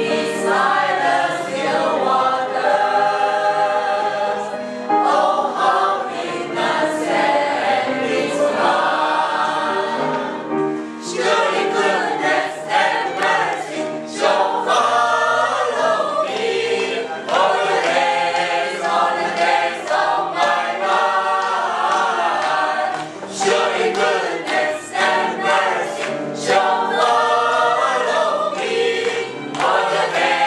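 Small mixed choir of men and women singing a hymn together, in sung phrases with short breaks between them.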